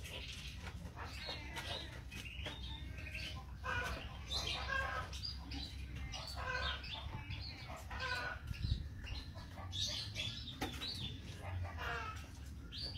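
Caged birds in an aviary chirping and calling: short high chirps throughout, with stronger calls every second or two, over a steady low background hum.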